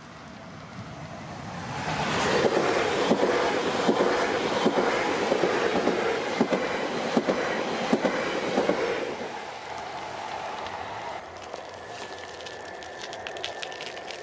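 Passenger train passing over a level crossing. The rumble builds over a couple of seconds, then a loud, fast run of wheel clicks over the rail joints lasts about seven seconds before fading as the train goes by.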